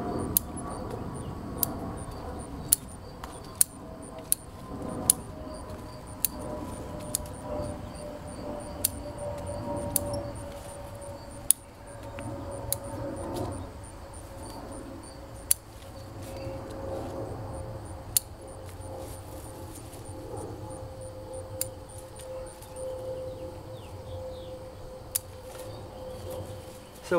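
Bonsai shears snipping Siberian elm branches: sharp metallic clicks at irregular intervals, roughly one a second. A steady hum that slowly falls in pitch runs underneath.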